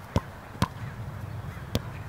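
A football being knocked about on grass: three short, sharp thuds, two close together and then a third a second later, over a faint low background rumble.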